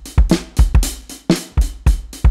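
Sampled acoustic drum kit from a drum plugin, played on a MIDI keyboard: a steady beat with a deep kick drum about twice a second and snare and cymbal hits between.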